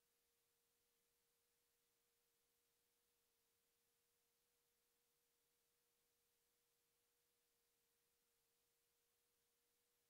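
Near silence in the audio feed, with only a very faint steady tone.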